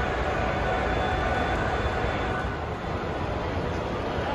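Model train running on a layout's track: a steady rumble of wheels rolling on rail, over the murmur of a large hall.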